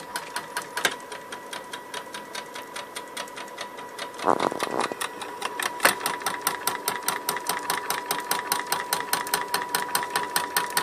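Salvaged printer stepper motor (200 steps per revolution) driven by a Pololu A4988 chopper driver, stepping a drilling-machine carriage along its rail: a steady high whine with a rapid, even run of clicks, and a brief louder stretch about four seconds in.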